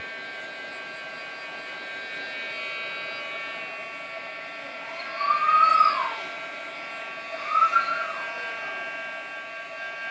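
Craft heat tool blowing steadily with an even motor whine while drying glued decoupage paper. Two short rising-then-falling tones stand out over it, about five and about seven and a half seconds in.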